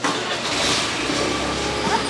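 A nearby engine running: a low, steady rumble that comes up suddenly at the start and holds. A single sharp knock, like a knife meeting a wooden chopping board, comes right at the start.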